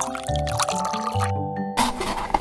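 Sound effect of liquid pouring into a bowl, standing for cream poured from a carton, over background music with steady melodic notes.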